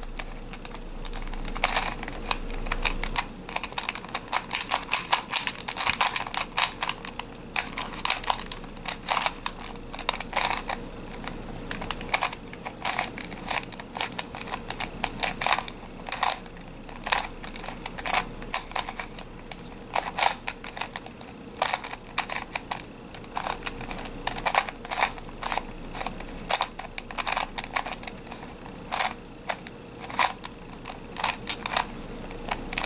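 Plastic face-turning octahedron puzzle being turned by hand, its faces clicking and clacking as they turn, in quick runs of several clicks with short pauses between.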